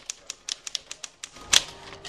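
Manual typewriter being typed on, quick key strikes at about six a second, with one heavier strike about one and a half seconds in.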